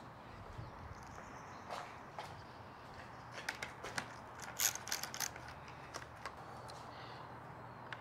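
Ratchet with a 6 mm hex bit clicking in short runs as a bar-end bolt of a motorcycle hand guard is loosened, the clicks coming mostly between about three and a half and five seconds in.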